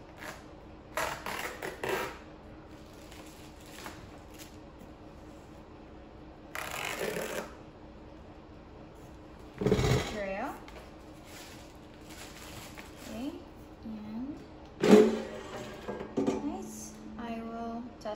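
Handling of a new Dreo air fryer: crinkling plastic wrapping and the unit's plastic body and basket knocking on the counter. A loud knock comes about ten seconds in, and the loudest, sharpest knock about fifteen seconds in, as the cooking basket comes out of the fryer.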